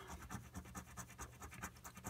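A Lincoln cent scratching the coating off a paper scratch-off lottery ticket: a faint, quick run of short scraping strokes, several a second.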